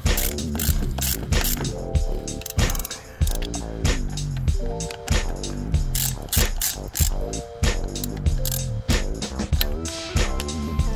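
Background music, with a socket ratchet wrench clicking in short irregular strokes as it turns the nut on a wheel's axle hub.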